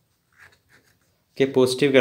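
A ballpoint pen writing on paper, a few faint short scratches, then a voice speaking from about one and a half seconds in.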